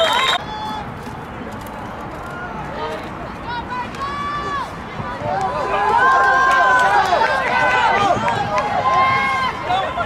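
A brief shrill whistle at the very start, typical of a referee blowing a play dead. Then the mixed voices of spectators and sideline players, getting louder from about six seconds in with many overlapping shouts as the next play is run.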